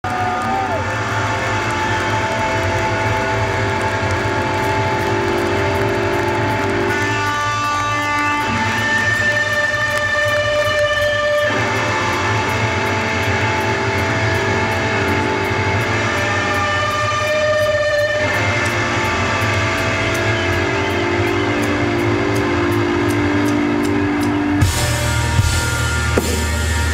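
Live rock band playing a slow, sustained intro: held electric guitar chords ring over a steady low bass drone, shifting to a new chord every few seconds. Near the end the full band comes in louder, with sharp drum hits.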